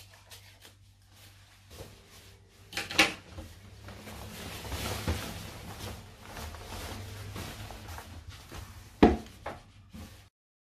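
Cotton fabric being handled on a worktable: a few faint scissor snips at the start, then rustling as the garment is shifted and smoothed, with a sharp knock about three seconds in and another near nine seconds as tools are set down.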